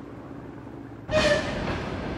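A faint low rumble, then about a second in the sound of a Soviet VL80-series electric locomotive and its train cuts in loudly and runs on close by, with a brief high tone at the start.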